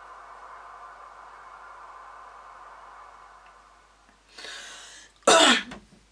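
A woman coughs once, short and loud, near the end, just after a softer breathy sound; before that there is only a faint steady background.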